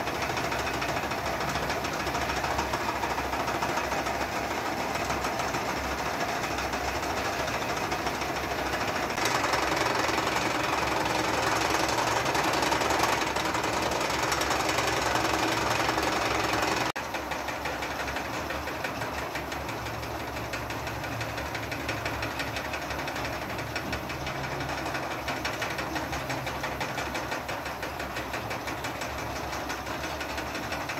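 Several small electric wool-spinning machines running together, a steady fast mechanical rattle and hum. It drops abruptly in loudness a little over halfway through.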